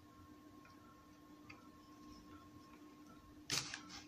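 Faint steady hum with a few faint ticks, then, about three and a half seconds in, a brief loud clatter as a smartphone is handled and a USB cable is plugged into it.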